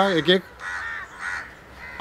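A bird calling twice with short, harsh calls, right after a man's brief words.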